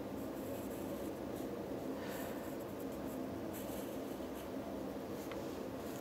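Pencil lead scratching on paper in short, faint strokes, on and off, as a drawing is shaded in.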